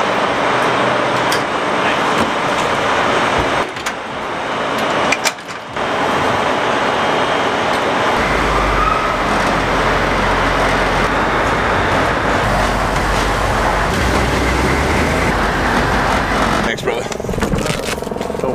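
Military Humvee's diesel V8 running as the vehicle is driven, heard from on board, with loud steady road noise. A deep engine rumble comes in about eight seconds in.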